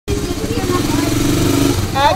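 Motor vehicle engine running steadily inside a tunnel.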